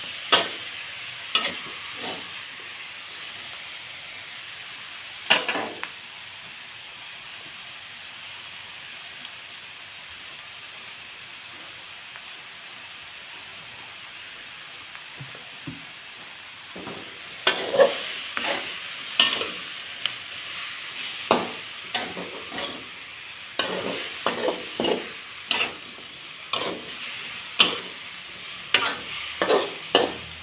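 Stir-fry sizzling steadily in a metal wok, with a metal spatula scraping and knocking against the pan: a few strokes at the start, a stretch of plain sizzling in the middle, then brisk, frequent stirring strokes through the last dozen seconds.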